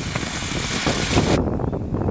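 Wind rumbling and hissing on the microphone as a racehorse gallops past on a dirt track, with irregular low thumps underneath. The loud hiss cuts off abruptly about two-thirds of the way through.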